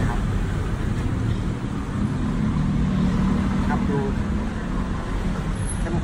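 Steady low rumble of road traffic, with a man's voice speaking briefly at the start and again about four seconds in.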